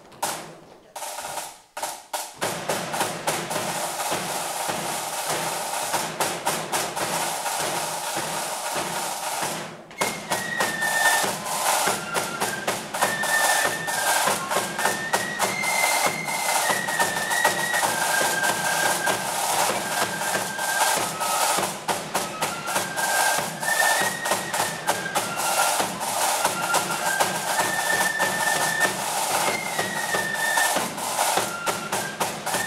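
A flute band playing: the drums start up about two seconds in, with a bass drum among them, and a massed flute melody joins about ten seconds in and carries on over the drum beat.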